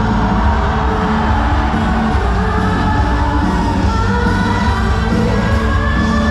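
A university cheer song played loud over an arena PA, with a crowd of students singing along and shouting in a large gym hall.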